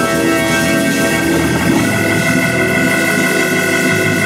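Organ playing sustained chords, changing chord about two seconds in.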